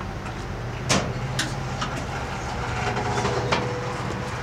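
Old studded wooden gate doors being worked open: a sharp knock about a second in, lighter clicks after it and near the end, and a faint drawn-out creak in the second half, over a steady low hum.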